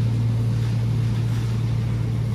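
A steady, deep hum from grocery-store chest freezer cases' refrigeration, one even low tone with a faint hiss above it.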